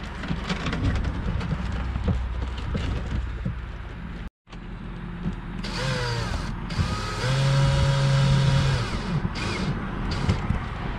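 DeWalt 20V cordless drill driving screws into the wooden mount of a switch panel: a short run with the motor whine rising as it spins up, then a steadier run of about two seconds that stops. Before this there are scattered clicks and knocks as the panel is pushed into place by hand.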